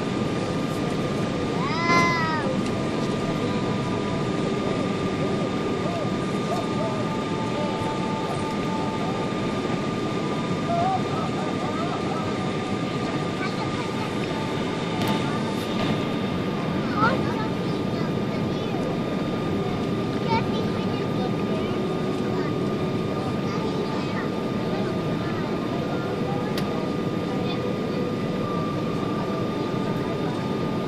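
Boeing 777-200 passenger cabin noise on descent: the steady rush of engines and airflow with a thin steady whine. A short high-pitched cry rises and falls about two seconds in, with faint voices now and then.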